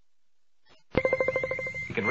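An electronic ringing tone with a rapid trill, like a telephone ring, starts abruptly about a second in after near silence.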